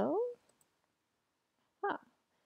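A woman's voice: the tail of a drawn-out "hello" that glides in pitch, then near silence, and a brief sound of her voice again just before the end.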